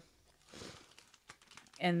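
Faint rustling and a few small clicks of a vinyl record and its sleeve being handled as one LP is put aside for the next.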